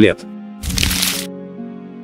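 Soft background music with held notes, and a short burst of noise lasting about half a second just after half a second in: a transition sound effect as the quiz moves on to the next question.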